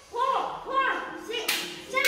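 Children's high-pitched voices calling out during an exercise, with two sharp smacks about one and a half and two seconds in.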